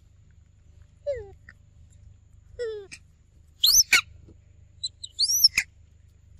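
Young macaques calling: two short, falling coo-like calls, then louder high-pitched squeals with a rising-and-falling pitch, one past the halfway point and another near the end.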